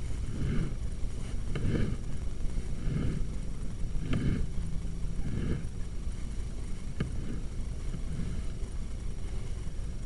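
Low rumbling handling noise from the sewer camera rig, with soft swells about once every second and a quarter that fade out about six seconds in, and a single sharp click a second later.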